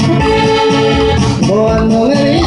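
Live band playing corridos: long held melody notes over a steady bass beat.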